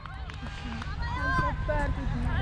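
Faint, distant voices of players calling out across the field, over a low rumble on the helmet camera's microphone that grows louder toward the end.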